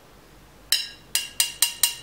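Five sharp metallic taps, each ringing briefly with the same bright tones. They begin about two-thirds of a second in and come quicker after the first, about four to five a second.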